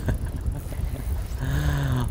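Wind buffeting the microphone on an open boat, a steady low rumble. A man's voice starts near the end.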